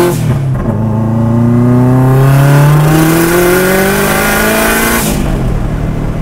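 Turbocharged engine of an all-wheel-drive Miata accelerating hard, heard from inside the cabin. The pitch drops at a gear change just at the start, climbs steadily for about five seconds, then falls as the driver lets off.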